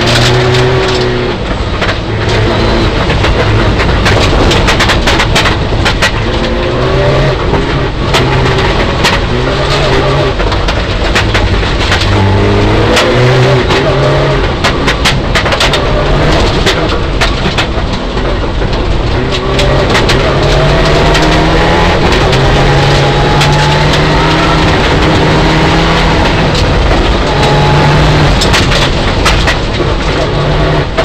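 Inside the cabin of a Mitsubishi Lancer Evolution IX rally car, its turbocharged four-cylinder engine revs hard at full stage pace. The pitch climbs and drops again and again through gear changes, with gravel stones pinging and clattering against the underbody throughout.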